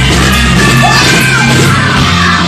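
Live blues band playing loud, with electric bass, drums, electric guitar and keyboards, and a woman singing and shouting over them.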